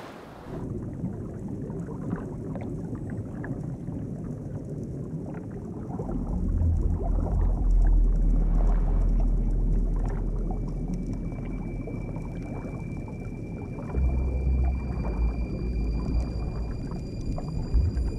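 A water splash cuts off about half a second in and gives way to muffled underwater ambience: a dense low rumble that swells into a deep drone about six seconds in and again near fourteen seconds. Thin steady high tones come in about halfway through.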